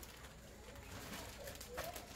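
Faint crinkling of a thin plastic bag being handled as clothes are pulled out of it, with a couple of brief rustles. A short low call sounds shortly before the end.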